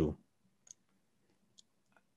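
The last of a spoken word, then a near-silent pause with two faint short clicks, a little under a second apart.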